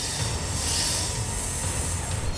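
A steady low rumble with a high hiss over it, with no speech: a noise-like sound bed under the footage.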